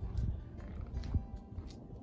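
Wind buffeting the microphone in a low rumble, with faint background music under it.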